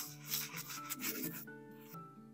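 A brush scrubbing a dirty coin in foamy cleaning solution, in quick back-and-forth strokes of about three a second, over background music.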